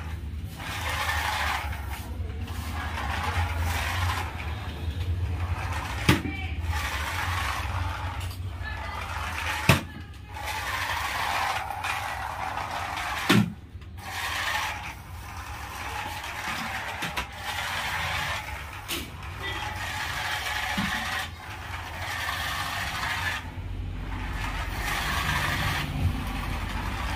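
Small electric motor and plastic gearbox of a toy remote-control truck whirring as it drives across a tile floor, stopping and starting several times. A few sharp knocks sound along the way.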